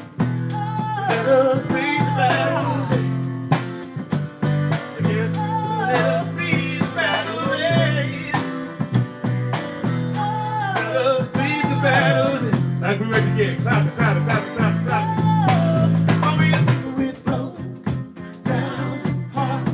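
Live band playing a bluesy song: strummed acoustic guitar and electric bass keeping a steady groove under a sung melody.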